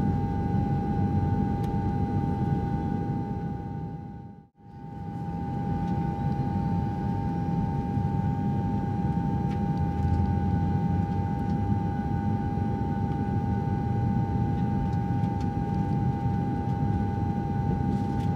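Jet airliner cabin noise during the climb: a steady rumble of engines and airflow with a constant whine on top. About four seconds in, the sound fades out briefly and comes straight back.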